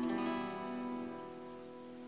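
A single strum of an E minor chord on a hollow-body archtop guitar, struck once at the start and left to ring, slowly dying away.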